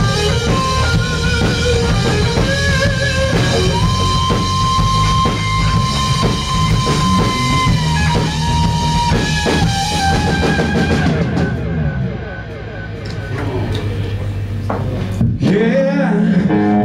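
Live rock band playing an instrumental passage: electric guitar with a long held note that bends down, over electric bass and drum kit. About 11 seconds in the band thins out to a quieter stretch, then comes back in full with a hit near the end.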